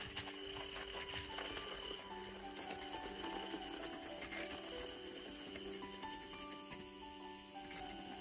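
Handheld battery milk frother running steadily, its small motor whirring as the wire whisk froths milk in a ceramic mug, with background music playing over it.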